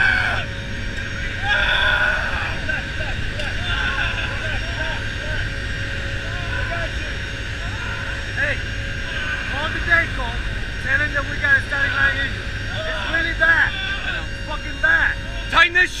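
Steady, loud drone of a C-130J's four turboprop engines heard from inside the cargo hold in flight, with a deep rumble under a cluster of steady propeller tones. Crew voices talk and shout over it.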